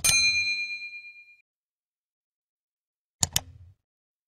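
Sound effects for a subscribe-button animation. A mouse click comes with a bright ding that rings out for about a second and a half. About three seconds in, a quick double mouse click follows.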